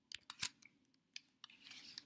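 A few separate clicks of computer keyboard keys and a mouse, the loudest about half a second in.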